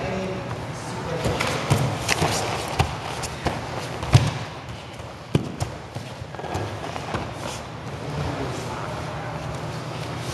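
Two grapplers scuffling on gym mats: shuffling bodies and feet with a series of sharp thuds and slaps, the loudest about four seconds in, as the standing exchange goes to the ground.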